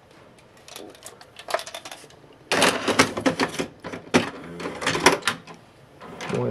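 VCR's tape-loading mechanism taking in a VHS cassette: a few light clicks, then from about halfway a louder run of rapid clicks and clunks over a low motor hum as the tape is drawn in and threaded.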